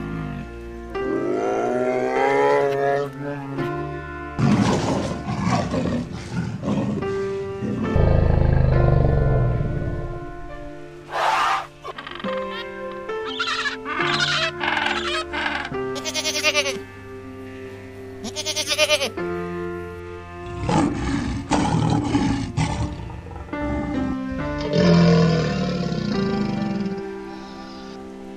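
Background music with a string of different animal calls laid over it, among them low roars.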